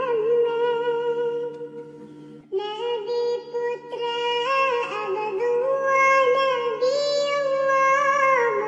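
A high-pitched, synthetic-sounding voice singing a sholawat melody in long held, wavering notes. It drops away briefly about two seconds in, then goes on singing.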